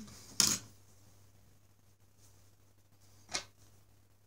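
Two short, sharp clicks from a utility knife cutting and handling thin plastic flex tubing: a loud one about half a second in and a softer one near the end, over a faint steady hum.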